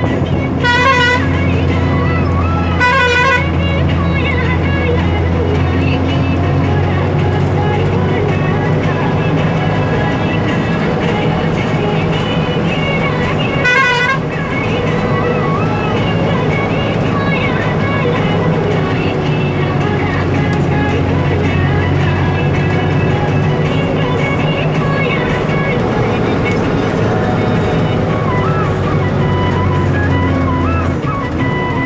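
A vehicle engine drones steadily under music with singing. Short horn toots sound about a second in, again near three seconds and again around fourteen seconds.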